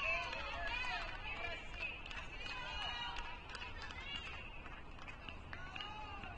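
Faint distant voices talking and calling out across the tennis courts, with a few faint sharp ticks.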